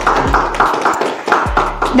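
Rhythmic hand clapping, several claps a second, over background music with a deep kick drum beat.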